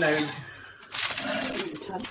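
A short metallic clink about a second in, metal striking a round metal cake tin, after a woman's voice trails off.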